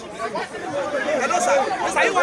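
Several people talking over one another: the overlapping chatter of a small crowd, with a man calling out.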